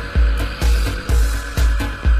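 Minimal techno DJ mix: a four-on-the-floor kick drum at a little over two beats a second, with hi-hat ticks between the kicks.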